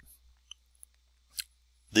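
A quiet pause in a man's talk holding a few faint, short clicks and one brief hiss, before his voice comes back at the very end.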